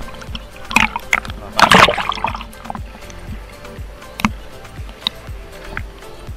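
Sea water splashing and sloshing against a camera held at the surface, the loudest splash about two seconds in, over background music.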